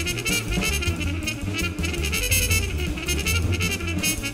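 Small jazz group playing: a muted trumpet plays a quick line of short notes over an upright bass.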